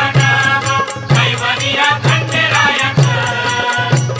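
Marathi devotional song to Khandoba: a sung melody over a steady drum beat and rattling percussion.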